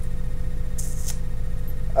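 A steady low electrical hum in the recording, with a faint steady tone above it, and one brief hiss about a second in.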